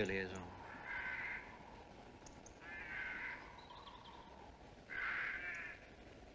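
A crow cawing three times, one harsh call about every two seconds.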